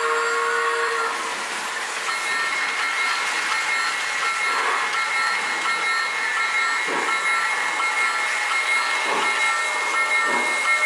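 Lionel O-gauge toy steam train running on three-rail track. A steam-whistle sound stops about a second in. After that the train runs on with a steady high tone and a short tone repeating about twice a second.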